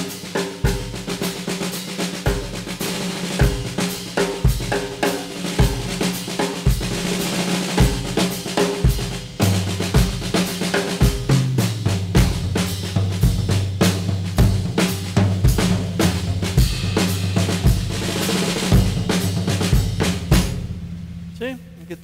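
A drum kit played in a busy groove on the 3-2 clave: regular bass drum strokes under snare and ringing tom-toms, with a continuous wash of cymbals and splashed hi-hats. The playing eases off near the end.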